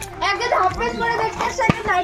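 Voices speaking, with one short sharp click near the end.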